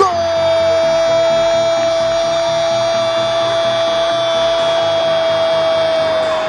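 Brazilian TV football commentator's long goal call, 'Gooool', held on one steady high note for about six seconds before breaking off just after the end. A steady rhythmic beat runs low underneath.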